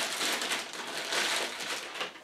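Thin plastic bag crinkling and rustling continuously as a router is slid out of it by hand.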